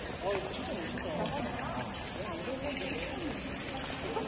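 Many people talking at once, indistinct overlapping chatter echoing in a large indoor ice arena.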